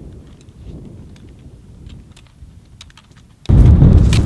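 Wind rumbling on the microphone outdoors, with scattered light clicks. About three and a half seconds in, the rumble suddenly becomes much louder, as heavier wind buffets the microphone.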